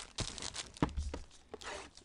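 Foil card-pack wrapper crinkling and cardboard box handling, with a few sharp taps and clicks.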